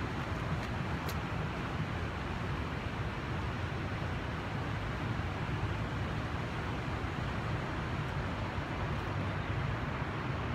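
Steady, even outdoor noise weighted toward a low rumble: the distant hum of city traffic heard from a hilltop lookout.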